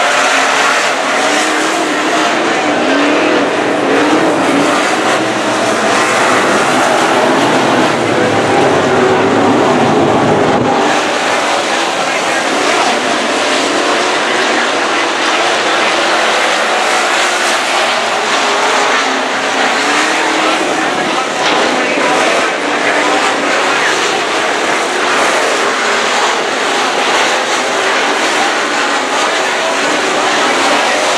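A pack of IMCA Sport Mod V8 race cars running at speed on a dirt oval, their engine notes rising and falling as they race past and through the turns. A deep low rumble under the engines drops away suddenly about eleven seconds in.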